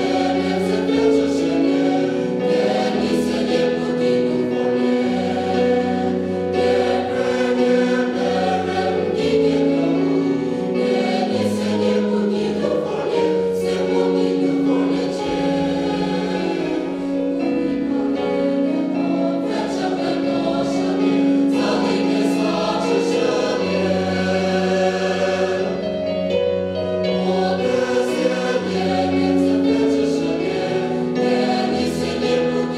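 Large mixed choir of women's and men's voices singing in parts, holding sustained chords that change every second or two at a steady, full level.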